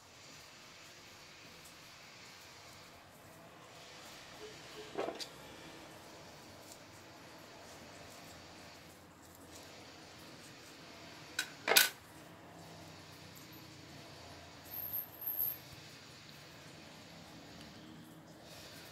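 Quiet handling of a cut succulent rosette and a metal tool, with a few small clicks and taps: a faint one about five seconds in, a sharp louder click just before twelve seconds, and a couple more near fifteen seconds.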